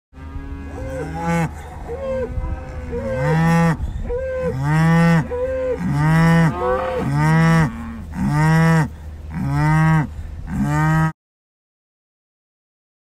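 Cattle mooing, a run of short calls about one a second, cutting off suddenly about eleven seconds in.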